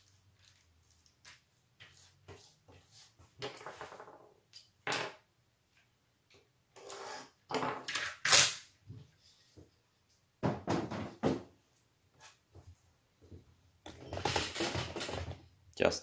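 Kapton tape pulled off its roll and stuck down on a wooden workbench: several short rasping pulls of tape among light clicks and handling knocks.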